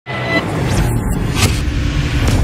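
Animated-intro sound effect: a steady low rumble with two short whooshes, about a second apart.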